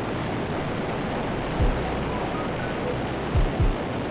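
Steady rushing noise of a Falcon 9 rocket's nine first-stage Merlin engines at liftoff, with music underneath and a few low falling sweeps.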